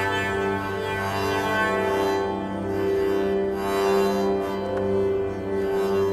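Strings of an electromagnetically prepared double bass sounding sustained, buzzy drone notes, set vibrating without a bow by electromagnets fed a synthesizer square wave. The notes change a few times as different keys are pressed, moving between octaves.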